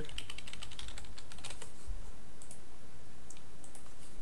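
Computer keyboard being typed on: a quick run of keystrokes at the start, then scattered single presses, over a steady low hum.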